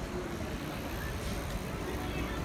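City street ambience: a steady low rumble of car traffic, with people's voices faintly in the mix.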